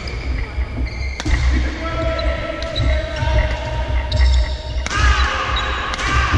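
Badminton doubles rally in a large hall: sharp racket hits on the shuttlecock, one about a second in and another near the end, with sports shoes squeaking on the court floor.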